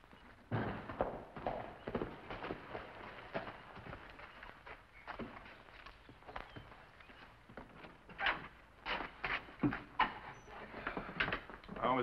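Horse hooves and footsteps on dirt: an uneven scatter of clops and thuds, thickest about a second in and again near the end.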